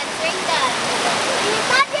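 Steady rushing of a river in flash flood, fast muddy floodwater pouring over the banks.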